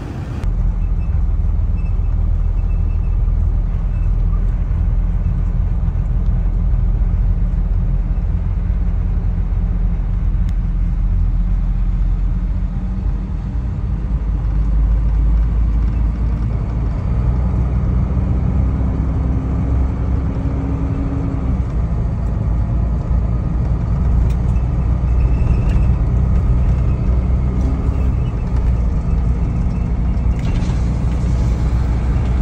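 Box truck driving at highway speed, heard from inside the cab: a steady low engine drone and road rumble.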